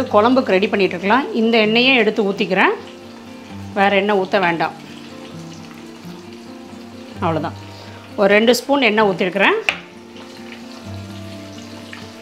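Minced-mutton balls shallow-frying in a pan of hot oil, with a steady sizzle.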